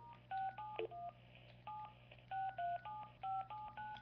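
Telephone keypad touch-tones: a string of about ten short two-note beeps, one per key pressed, as a phone number is dialed to place a call.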